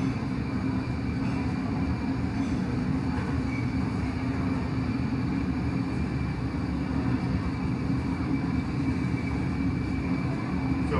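Steady low roar of a glassblowing studio's gas-fired furnaces and burners. A faint hiss of steam comes from the wet wooden block held against the hot glass.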